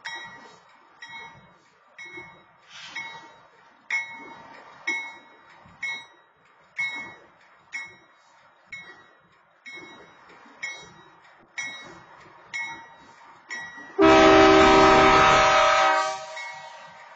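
Railroad crossing bell ringing about once a second while the crossing is activated. Near the end, a BNSF freight locomotive's horn sounds one loud blast of about two seconds.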